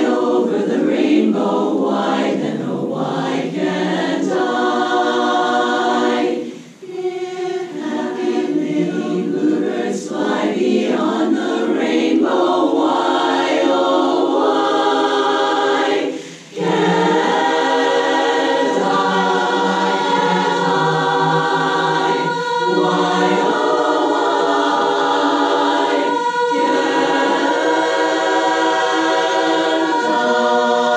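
Women's chorus singing a cappella in sustained chords, with two brief breaks, about seven seconds in and again about sixteen seconds in.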